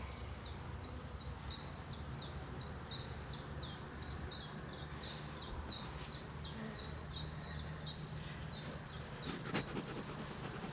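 A small songbird calling a long, regular run of short, high, falling notes, about three a second, over the faint low hum of honeybees at an open hive. A few light knocks come near the end.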